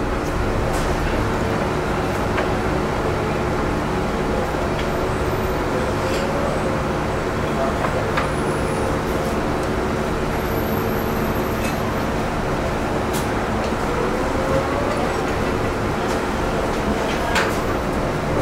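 Steady workshop machinery hum: a constant rumble with several steady tones, with a few faint clicks here and there.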